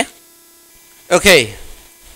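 A faint, steady electrical hum in the recording, heard plainly during a pause in the narration, broken by a man saying "okay" about a second in.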